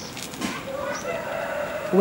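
A rooster crowing once: one long call that starts about half a second in and holds nearly to the end.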